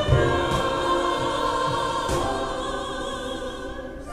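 Mixed church choir singing a held chord that gradually dies away.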